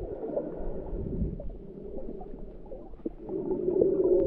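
Muffled underwater sound of moving water, picked up by a camera held below the surface. A low, steady hum comes in near the end.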